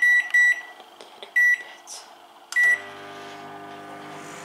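Panasonic microwave oven keypad beeping as its buttons are pressed: four short, high beeps. After the last one the oven starts running with a steady hum.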